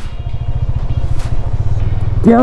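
Road vehicle's engine running steadily while under way, a low rumble of fast even firing pulses.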